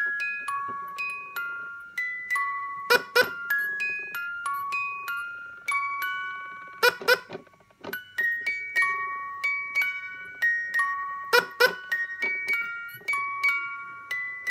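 The Fisher-Price Quacking Duck cot toy (1992) playing its lullaby melody in clear, bell-like single notes while the duck rocks. Three times, about every four seconds, a short burst of two or three sharp sounds cuts in over the tune.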